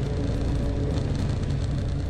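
Aircraft engines running steadily: a low, even drone with a steady hum.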